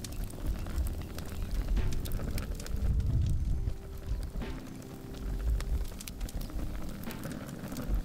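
Wood campfire crackling with many small scattered pops, under soft background music with long held notes and a low rumble.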